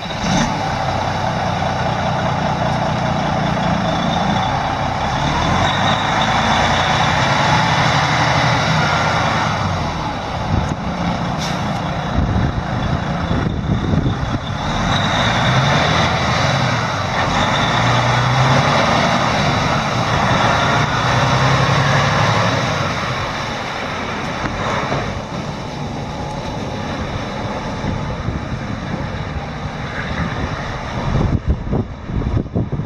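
2009 Freightliner Cascadia 125 tractor's diesel engine running just after a start, its note rising and falling in two louder stretches as the truck is driven off.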